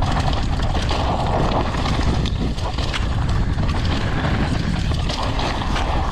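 Mountain bike ridden fast down a dusty, rocky dirt trail, heard from a helmet camera: a steady rush of wind on the microphone over tyre noise on loose dirt, with frequent knocks and clatters as the bike hits rocks and bumps.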